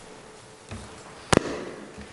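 A single sharp knock or bang about a second and a half in, much louder than the room around it, with a short ring-out after it.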